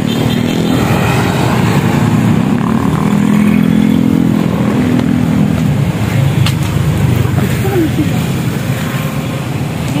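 Road traffic with a small motorcycle passing close by, its engine note swelling over a few seconds and then fading.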